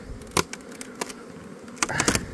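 Honeybees buzzing steadily around an open hive, with a few sharp clicks and knocks as the hive box is handled.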